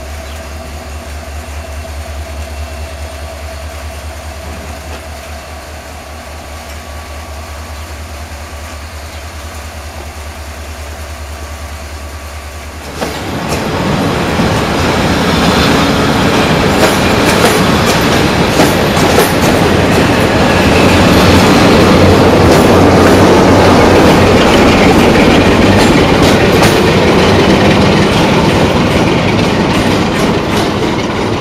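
For the first dozen seconds, a diesel locomotive idles with a low, steady, pulsing drone. Then, suddenly and much louder, blue passenger coaches roll close past in a shunting move behind CFR diesel-electric locomotive 60-1228-0. Their wheels rumble and clatter over the rail joints in a run of clicks.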